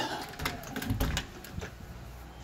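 Sharp clicks of a brass door knob and latch as a double front door is opened, with a dull thump about a second in.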